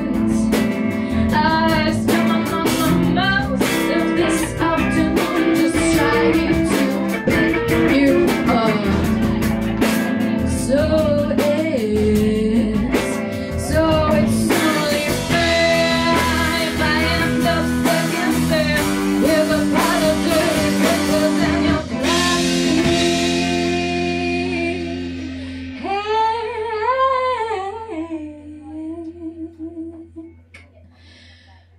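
Live rock band: female lead vocals over electric guitars, bass guitar and drum kit. About three-quarters of the way through, the drums stop and a chord is left ringing while she sings a last, wavering held phrase, and the song dies away near the end.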